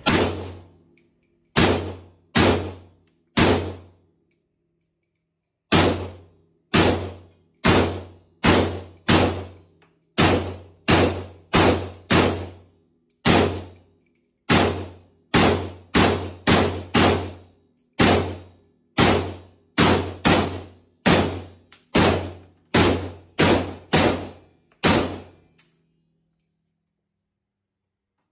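Semi-automatic gunfire at an indoor range: a few shots, a short pause, then a long steady string at one to two shots a second, about forty in all. Each report is sharp and echoes briefly off the range walls.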